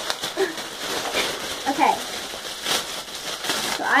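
Thin plastic packaging being torn open and crinkled by hand: a continuous rustle with many sharp crackles.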